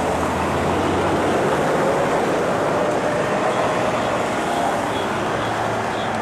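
Steady noise of a running motor vehicle, with a faint engine tone slowly rising in pitch.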